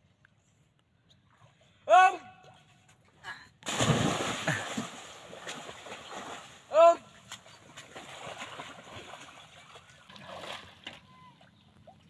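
A person jumping from a pier into the sea: a big splash about four seconds in that fades into sloshing and lapping water. Short shouts come just before the jump and again a few seconds after it.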